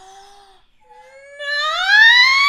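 A long, high-pitched wailing cry that starts about a second in and rises steadily in pitch and loudness.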